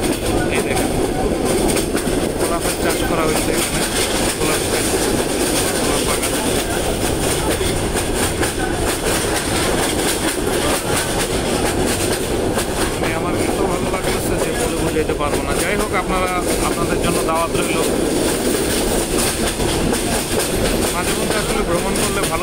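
A train running at speed, heard from aboard: steady running noise of wheels on rails and carriage, even in level throughout.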